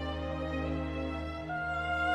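Slow classical music with orchestral accompaniment: sustained chords over a low held bass note, with a single held note with vibrato coming in about a second and a half in.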